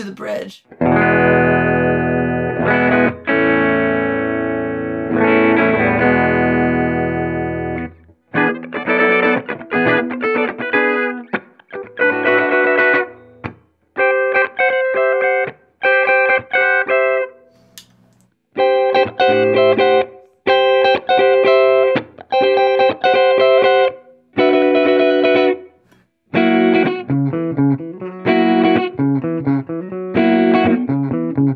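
Ernie Ball Music Man Stingray RS electric guitar, its Alnico 5 humbuckers on the middle pickup setting, played through an amp. Chords ring out for the first eight seconds or so, then come as a run of short chord phrases about a second apart, each stopped before the next.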